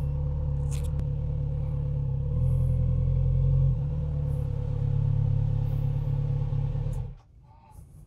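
Kawasaki Z900RS Cafe's inline-four engine idling steadily, running a little louder for a second or so twice, then the sound cuts off suddenly near the end.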